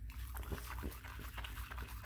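Boston terrier making close-up dog noises at the foam, a quick irregular run of short clicks and snuffles.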